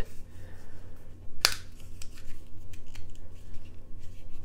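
Plastic clicks as a small toy remote control is handled in the hands: one sharp click about a third of the way in and a fainter one a little later, with small ticks between, over a low steady hum.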